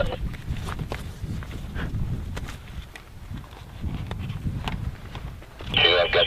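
Low, steady rumble of wind buffeting the microphone, with scattered light clicks and rustles.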